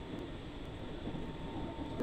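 Steady running rumble of a train, heard from inside the passenger carriage.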